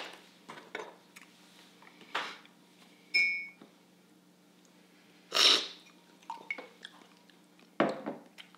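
Metal cupping spoons clicking and clinking against ceramic cups, one clink ringing briefly about three seconds in. Loud, noisy slurps of brewed coffee sucked off a cupping spoon: the loudest comes about five seconds in and another near the end.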